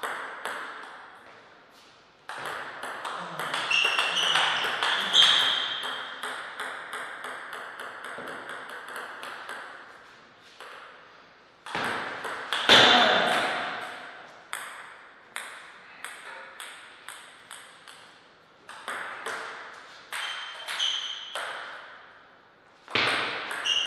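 Table tennis rallies: the ball clicks back and forth off the bats and the table at an even pace. Short high squeaks and louder scuffling come in the first half, and there is a loud burst about thirteen seconds in.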